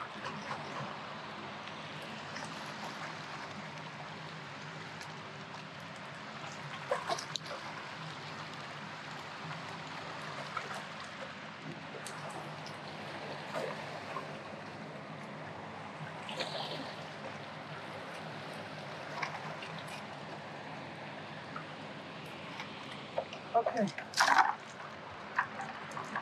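River water running steadily past a rocky bank, with scattered small knocks and splashes and a few louder ones near the end.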